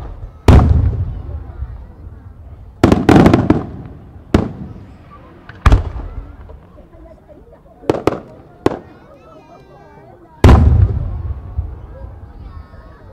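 Aerial firework shells bursting overhead: a series of sharp bangs, each trailing off in a long low echo. There are about eight in twelve seconds, with a quick cluster around three seconds in, and a loud one about half a second in and another near the end.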